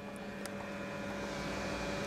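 A steady low hum over a soft background rumble, slowly growing a little louder.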